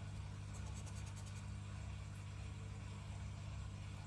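Faint short strokes of a scraper rubbing the latex coating off a lottery scratch card, mostly in the first half, over a steady low hum.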